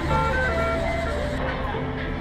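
Background music: a melody of held notes over a sustained bass.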